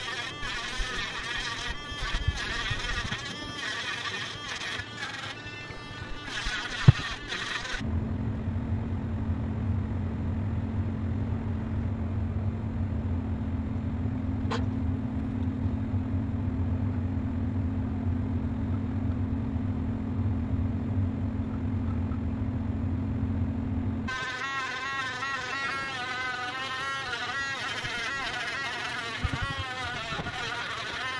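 A small handheld electric engraver buzzes with a wavering whine as its bit cuts tiny window openings into a clay pot, for the first several seconds and again near the end. One sharp click comes about seven seconds in. In between, a steady low hum runs while the engraver is not heard.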